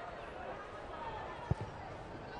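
A football kicked once, a single sharp thud about one and a half seconds in, over low stadium background noise.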